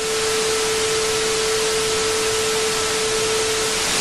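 Loud, steady static-like hiss with a single steady mid-pitched tone running through it.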